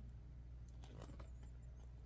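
Near silence: room tone with a low steady hum and a few faint ticks near the middle.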